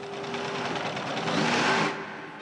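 A rushing noise that swells over about two seconds and cuts off suddenly near the end, over a faint steady hum.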